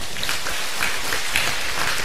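An audience applauding: many hands clapping together in a steady, even wash of claps.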